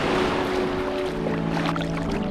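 Sea water washing and sloshing as someone wades into shallow surf, a steady rush of noise. Background music with held notes fades in under it from about half a second in.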